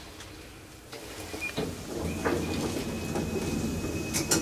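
Hydraulic elevator's sliding doors closing with a few clicks and knocks, then a low hum and a steady high whine starting about halfway through as the pump motor starts.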